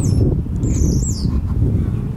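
A small bird's high chirps: a short falling note right at the start and a longer wavering call around a second in, over a steady low rumble.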